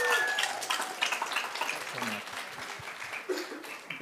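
Audience applauding, the clapping dying away over a few seconds.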